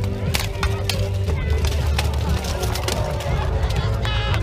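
Weapons striking steel plate armour and shields in full-contact armoured combat: an irregular run of sharp metallic clangs and knocks over a steady background din.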